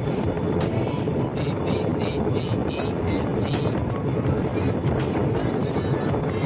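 Motorised bamboo train (norry) running along the rails: a steady rumble of its engine and wheels mixed with wind, with a few sharp clacks.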